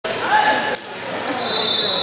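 Indoor basketball game in an echoing gymnasium: shouting voices and a ball bouncing on the hardwood floor, with a steady high tone starting a little past halfway.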